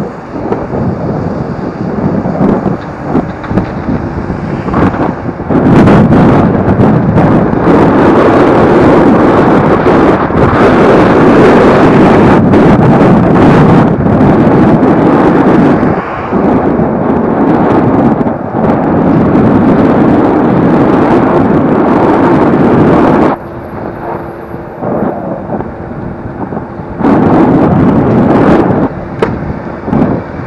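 Wind buffeting the camera microphone on a moving e-scooter, with road and traffic noise underneath. It grows very loud a few seconds in, eases off for a few seconds after the middle, then comes back near the end.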